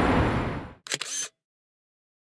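Outdoor background noise fades out, then a camera shutter fires once with a quick double click about a second in, and the sound cuts to dead silence.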